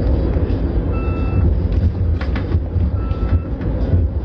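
Steady low rumble of a moving vehicle heard from inside the cabin, with a faint short beep twice, about two seconds apart.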